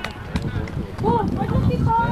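Short shouted calls from people at a football game, one about a second in and another near the end, over a low rumble.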